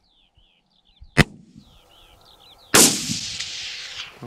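A hunting rifle fired from shooting sticks: a short, sharp crack about a second in, then a loud shot near three seconds whose report rolls away for about a second.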